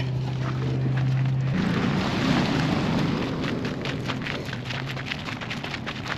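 Footsteps crunching across loose gravel. A low steady hum stops about a second and a half in.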